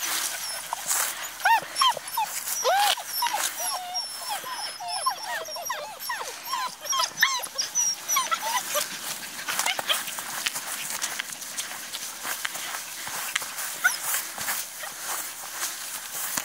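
Bohemian Shepherd (Chodský pes) puppies whining and yipping in play: a quick run of short, high, rising-and-falling cries from about one second in to about nine seconds in, over scuffling and rustling of the dogs in the grass.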